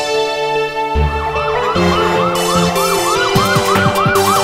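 Police car siren starting about a second in, its pitch rising and falling quickly about three to four times a second, over background music.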